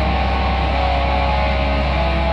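Doom metal recording: heavily distorted electric guitars and bass holding sustained notes over a steady, heavy low end.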